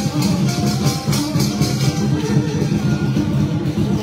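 Lion dance music: drums and cymbals playing a steady, rapid beat.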